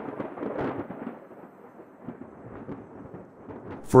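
Thunder: a sudden loud clap that eases within about a second into a lower rolling rumble with a hissing, rain-like wash.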